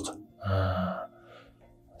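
A man's short audible breath, lasting about half a second, with a faint voiced tone in it, followed by near quiet.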